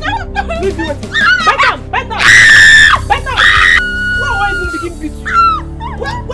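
A loud, high-pitched scream in two bursts, the first about two seconds in and a shorter one just after three seconds, over excited voices and background music.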